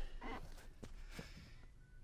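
A man's soft breathy exhale, like a sigh, between phrases, followed by a few faint light ticks.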